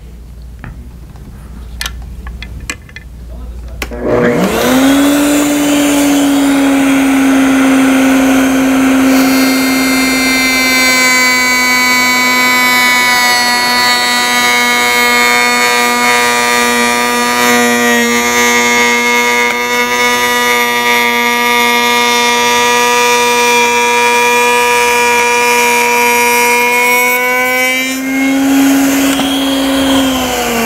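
Table-mounted router spinning up about four seconds in and running with a steady high whine while its large Wood River 45-degree lock miter bit cuts a board fed upright along the fence. The pitch lifts a little near the end as the bit clears the wood, then starts to wind down at the very close.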